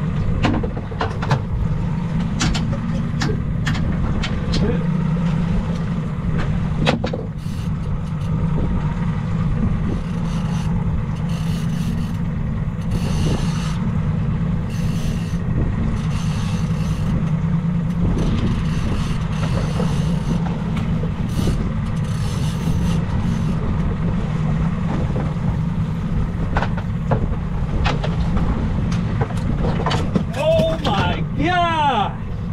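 Outboard motor running steadily at low speed, with a constant low rumble and a few sharp knocks in the first several seconds.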